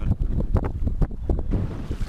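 Wind buffeting the microphone in irregular gusts, over the low wash of the sea around a small open boat.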